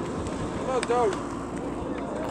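Steady outdoor noise with wind on the microphone. A short two-syllable call from a voice a little under a second in.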